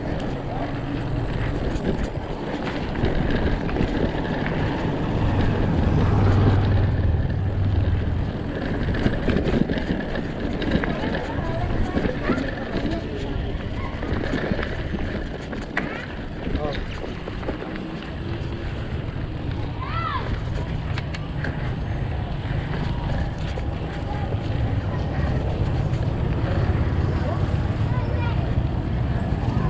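Mountain bike rolling over a gravel road, a continuous rumble of tyres on loose stones and wind on the microphone, with scattered clicks and knocks as the bike jolts over the surface.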